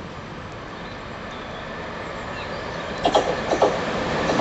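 Electric multiple-unit passenger train approaching, its running noise growing steadily louder, with a few sharp clacks and brief squeals from the wheels about three seconds in.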